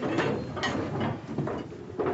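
Indoor bustle of movement, with short knocks and scrapes in quick succession, like furniture or a door being moved in a room.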